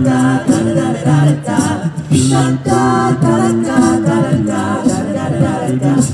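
Male a cappella vocal group singing wordless close harmony through hand-held microphones, several voices holding shifting chords to a steady rhythm.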